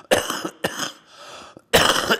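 A man coughing into his fist, a run of separate coughs: two close together near the start and the loudest one near the end.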